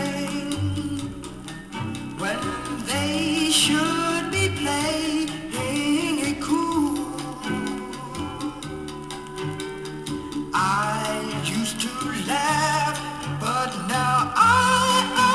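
A 45 rpm vinyl single playing on a record turntable: singing over a backing band in a late-1950s pop/R&B recording.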